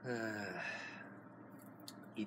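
A man sighs once, a voiced out-breath that falls in pitch and trails off into breath within about a second.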